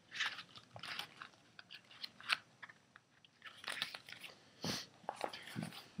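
Pages of a paper manual rustling as it is handled and leafed through, then light clicks and rustles of items being picked out of a plastic carrying case: scattered, soft and irregular.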